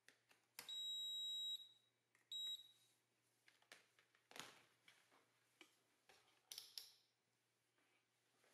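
Digital multimeter beeping: one steady high beep lasting about a second, a shorter beep a second later, then a few faint handling clicks.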